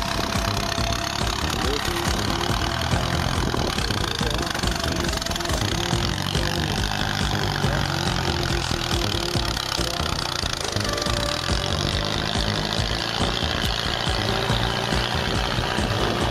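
A Land Rover off-road vehicle's engine running under load as it climbs a steep muddy slope on a winch line, its pitch rising and falling, with voices of people nearby.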